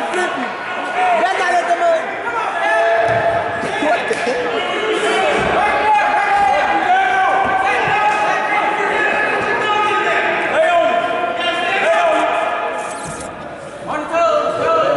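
Several voices shouting without pause, echoing in a gymnasium. A few dull thumps of wrestlers' bodies hitting the mat come through between them.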